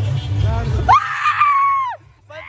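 A person's long, high-pitched yell: it rises sharply about a second in, holds for about a second and falls away at the end. Before it, music with a heavy bass and general noise.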